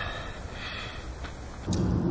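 Faint outdoor background with a low rumble, then near the end a car's engine and road noise, heard from inside the cabin, starts abruptly and louder.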